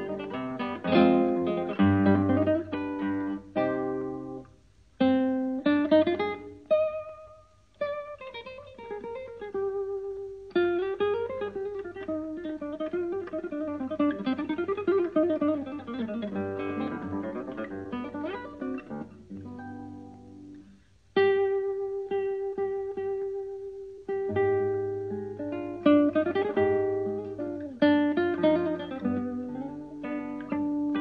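Background music on solo acoustic guitar, plucked and strummed, with brief pauses between phrases.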